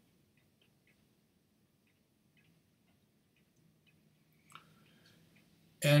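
Near silence: faint room tone with a few soft ticks and one small click, then a man's voice starts right at the end.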